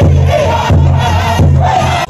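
Powwow drum group: several voices singing a high, wavering chant over the steady beat of a large drum.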